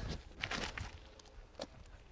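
A few faint footsteps and scuffs on the ground from a disc golfer stepping through a throw, several in the first second and one more near the end.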